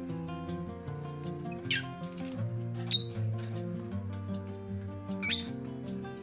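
Instrumental background music, over which a rosy-faced lovebird gives three short, high chirps about two seconds apart; the first and last fall in pitch, and the middle one is the loudest.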